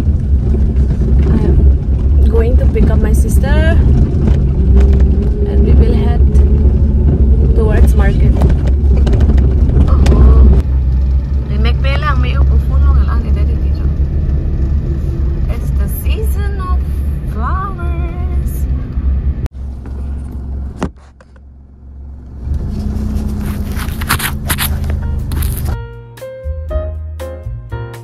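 Low rumble of a car driving, heard from inside the cabin, with a song with singing playing over it. The rumble cuts off suddenly about twenty seconds in, giving way to a brief quieter stretch and then a brighter room sound.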